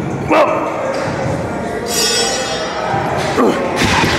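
Busy gym sound with voices and background music, and a single thump about a third of a second in.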